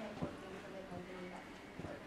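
Faint, indistinct speech in a room, with three light knocks spaced under a second apart.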